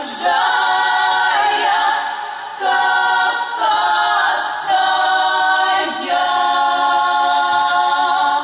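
Female vocal ensemble of five voices singing a cappella in harmony, in phrases of long held notes with short breaks between them.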